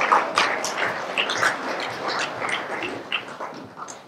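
Audience noise in a hall: a dense jumble of short sounds that gradually dies away over a few seconds.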